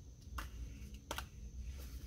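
Quiet handling of a ring-bound sticker book: a couple of brief, soft paper ticks as its pages are turned.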